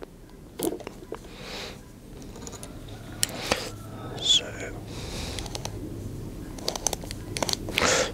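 Scattered light clicks and handling sounds from a Wera click-torque tool as its torque setting is turned down, with a soft breath or whisper about four seconds in.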